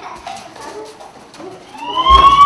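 Children's voices and movement in a large hall, fairly quiet. Near the end a siren starts up, rising in pitch.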